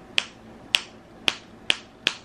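The magnetic closure on a baby's romper clicking shut as the magnets snap together, four sharp clicks about half a second apart.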